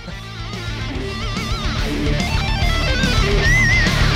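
Electric guitar lead playing, with wide vibrato on sustained high notes over a steady low note, growing louder.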